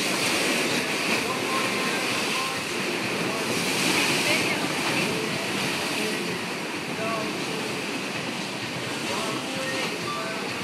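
Steady rushing noise of a tropical storm's wind, rain and waves, swelling briefly about four seconds in, with people's voices faint in the background.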